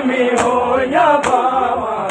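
Large crowd of men chanting a Muharram noha (lament) in unison, with sharp unison chest-beating (matam) strikes on the beat. Two strikes fall in these seconds, a little under a second apart.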